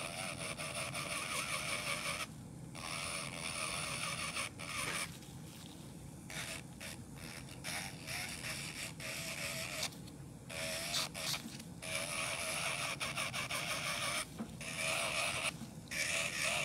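Electric nail drill (e-file) running with a slim bit against the cuticle edge of an artificial nail, a high whine whose pitch wavers as it grinds. It drops out briefly about four times as the bit lifts off the nail.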